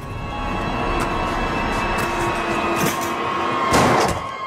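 Horror trailer score: a loud, swelling drone of held tones building up and ending in a sharp hit just before the end.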